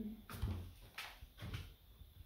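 A few light knocks and taps, about four in two seconds, one with a dull low thump.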